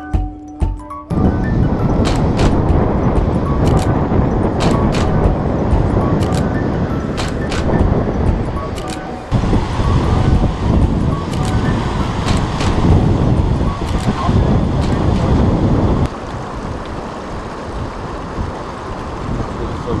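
Wind buffeting the microphone, a loud rumbling noise with scattered crackles, dropping somewhat in level near the end. Guitar music plays briefly at the start and cuts off about a second in.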